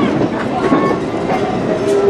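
Heritage passenger train rolling slowly, heard from aboard an open coach platform: a steady rumble of wheels on rail with light clicks from the track. A steady tone starts near the end.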